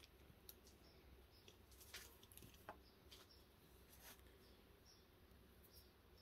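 Near silence: room tone with a low hum and a few faint, scattered clicks.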